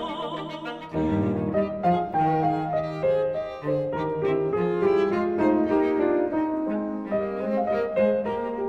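A classical piano trio of piano, violin and cello plays an instrumental interlude between verses of a folksong arrangement. A held note with vibrato ends about a second in, then the piano and strings carry on in a steady, moving accompaniment.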